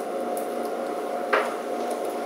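Steady room hum with a faint steady whine running through it, as from a fan or ventilation, and one short noise about a second and a half in.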